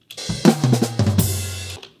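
Multi-mic drum recording played back from its soloed overhead microphone track: the whole kit heard from above, a few drum hits and a cymbal ringing out, dying away near the end.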